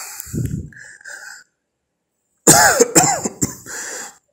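A man coughing in a voice message: small throat sounds early, then two or three loud coughs about two and a half seconds in.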